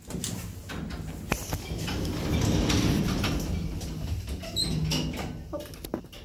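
Automatic sliding doors of a Shcherbinka (ShchLZ) passenger elevator running, with sharp clicks near the start as a button on the car panel is pressed. The doors do not close fully.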